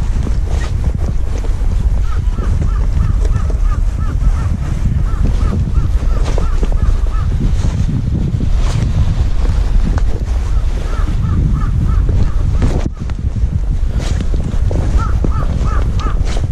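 A bird calling in three runs of short, quickly repeated honking notes, about a quarter of the way in, halfway through and near the end, over a steady low rumble of wind buffeting the microphone.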